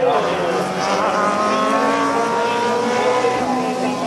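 Race car engines going past on the circuit. The pitch drops as one car passes near the start, then a long engine note rises and holds as another car accelerates away.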